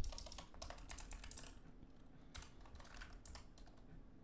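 Faint typing on a computer keyboard: a quick run of keystrokes in the first second and a half, then a few scattered keys.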